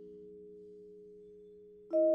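Vibraphone chord of several low notes ringing and slowly dying away; just before the end a new pair of higher notes is struck with a mallet, loud and ringing.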